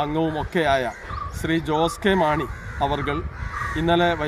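A man speaking Malayalam in continuous, steady talk.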